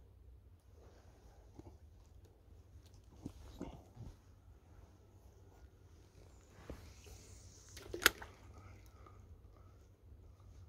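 Spinning reel being cranked as a lure is retrieved, with soft clicks and rustles from handling the rod and reel, and one sharp click about eight seconds in.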